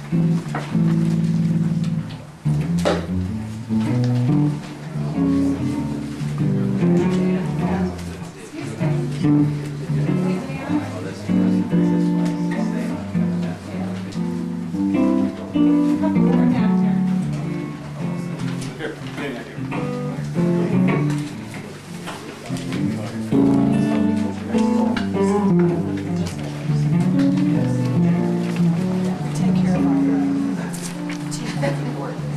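Solo archtop guitar played fingerstyle, running chords and moving bass and melody lines with plucked notes throughout.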